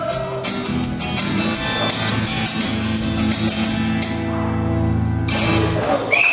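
Live music led by guitar, playing out the end of a song: a final chord is held and then stops sharply just before the end.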